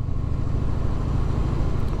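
2001 Harley-Davidson Heritage Softail's V-twin engine running steadily as the bike cruises, heard from the rider's seat.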